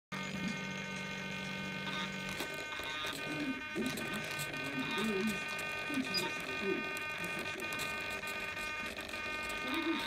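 Small RC servo in a glider wing driving the airbrake (spoiler) blade up: a steady electric buzzing whine for about the first two seconds. A thinner, fainter high buzz then holds on.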